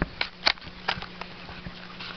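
Trading cards being handled and laid down on a playmat: a handful of short clicks and taps, the sharpest about half a second in, over a steady low hum.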